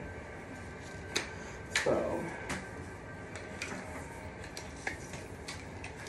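A few light plastic clicks and taps from a curling wand and its cord being handled, a sharper click about a second in, against a faint steady background.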